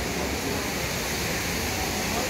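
Trevi Fountain's cascading water rushing steadily, with faint crowd chatter underneath.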